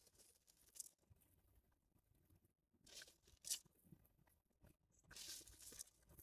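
Mostly near silence, broken by a few faint, brief rustles of granular slow-release fertilizer being scooped from a plastic bucket and scattered onto soil. The rustles come about a second in, twice around three seconds in (the second the loudest), and near the end.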